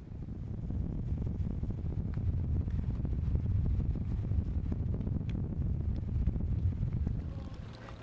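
Wind rumbling on an outdoor microphone, an uneven low rumble that comes in suddenly and eases off near the end, with a few faint clicks.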